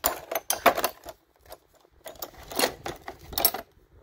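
Metal hand tools (ratchets, extensions, pliers) clinking and rattling against each other in a plastic tool box as they are handled, in two bursts of clatter.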